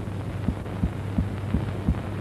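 Steady low hum with soft low thumps in an even beat, about three a second.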